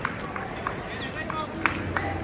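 Irregular sharp clicks of table tennis balls striking tables and rackets at several matches at once, ringing briefly in a large hall, over a murmur of voices.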